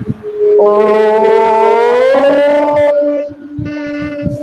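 Several voices chanting a long, held 'Om' together over a video call, not quite in unison. One voice starts and others join half a second later at different pitches, rising slightly. Most stop about three seconds in while one lower voice holds on.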